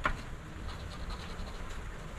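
A coin scraping the coating off a scratch-off lottery ticket, with a sharp tap as the coin meets the card at the start.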